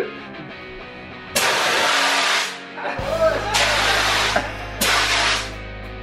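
Fire extinguisher discharged in three loud blasts of hiss, each about a second or less, with short gaps between.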